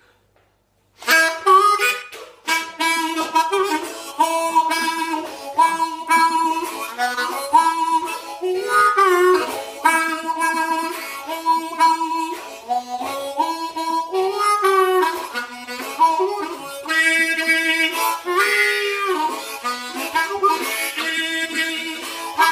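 Hohner Meisterklasse diatonic harmonica in the key of A played solo: a bluesy riff of short notes with some bent, sliding notes, starting about a second in.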